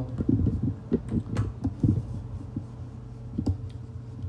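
Scattered light clicks and soft taps of a computer mouse being clicked and dragged on a desk during brush strokes, at an uneven pace over a steady low hum.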